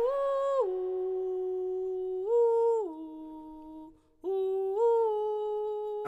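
A single voice humming a slow wordless melody in long held notes, stepping up and down in pitch, with a brief break about four seconds in.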